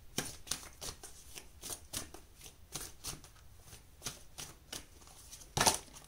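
A deck of oracle cards being shuffled by hand: a quick, even run of soft card slaps, about three or four a second, with a louder burst of card noise just before the end.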